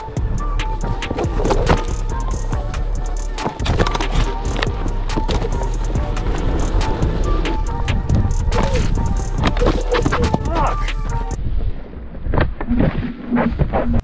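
Background music over the rolling noise of a Onewheel on a dirt trail: a steady rumble from the tire with frequent knocks and clicks as the board runs over bumps.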